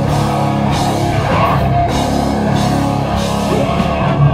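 Live rock band playing loud heavy rock: electric guitar over a drum kit, continuous.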